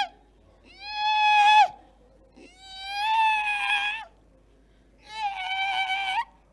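A woman's voice giving three long, high-pitched wailing cries into a microphone, each about a second long, rising at the start and then held, with short pauses between them.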